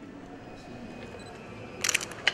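Camera shutter clicks: a quick run of sharp clicks near the end, over quiet room tone.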